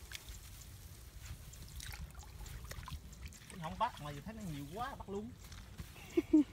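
Faint dribbling and sloshing of a hand groping through shallow muddy water in a rice-field ditch, with soft scattered clicks. A person's voice comes in briefly about halfway through.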